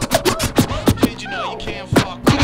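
Vinyl records scratched on several turntables over a drum beat: quick back-and-forth scratches between sharp drum hits, with a longer rising-then-falling scratch sweep a little past the middle.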